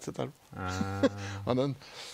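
A man's voice holding one long, low, steady drawn-out sound for about a second, between short bits of speech.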